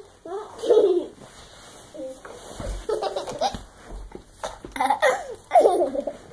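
Young child giggling and laughing in several short bursts.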